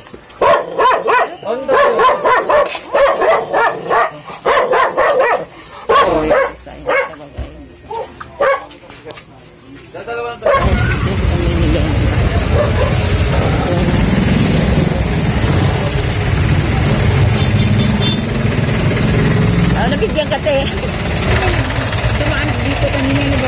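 Short, broken calls and voices for about the first half. Then there is an abrupt switch to a steady, loud street noise with a low rumble of passing traffic and motorcycle engines.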